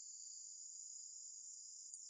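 Insects singing in a faint, steady, high-pitched drone with no break.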